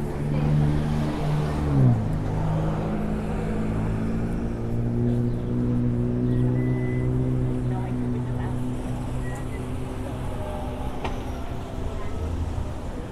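A motor vehicle's engine running on the street alongside. Its pitch drops sharply about two seconds in, as on an upshift or easing off the throttle, then holds steady and fades slowly toward the end.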